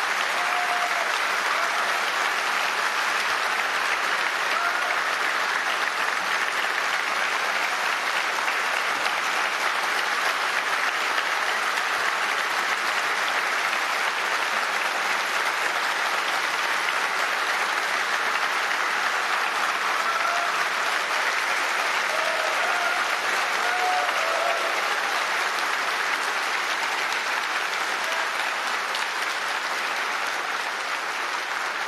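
A large indoor audience applauding steadily and at length, a long ovation for a speaker at the podium.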